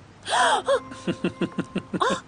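A woman's sudden loud gasping yelp of pain, twice in quick succession, as she is pinched, followed by a quick run of short, clipped vocal cries.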